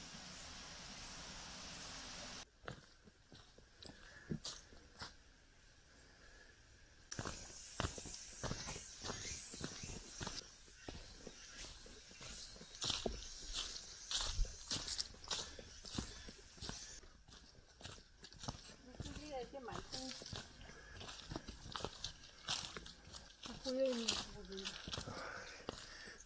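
Irregular footsteps crunching over leaf litter and stones on a forest trail, starting about seven seconds in. Before that there is a steady rush of flowing stream water, which stops abruptly after a couple of seconds.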